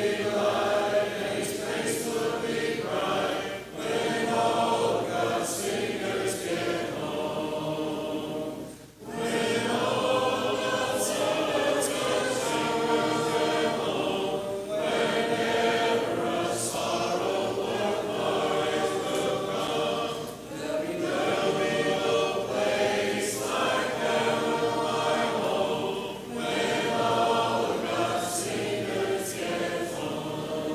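A congregation singing a hymn a cappella. It goes phrase by phrase, with brief breaks for breath about every five or six seconds.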